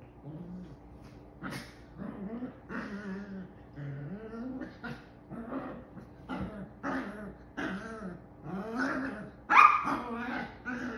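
Two Chihuahua puppies play-fighting, with a run of short growls, yips and barks. The sharpest and loudest comes near the end.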